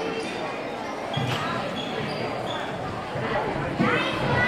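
Background voices murmuring in a large gym hall, with a dull thump about a second in.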